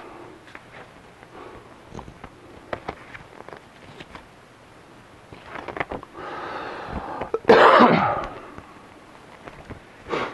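Paper leaflets and packaging handled, with small clicks and rustles, then a short, loud, harsh burst of noise about seven and a half seconds in.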